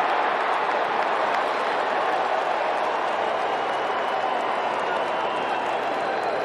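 Ballpark crowd noise: a steady, even din from the stadium crowd with no single event standing out.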